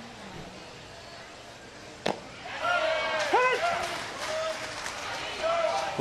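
Low ballpark background for the first two seconds, then one sharp pop as a pitched baseball is caught or hit, followed by several seconds of voices shouting and calling out.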